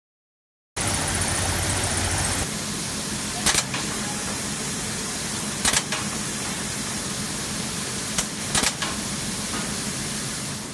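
Folder gluer (carton pasting machine) running steadily, with a few sharp clicks over the run; the sound cuts in about a second in.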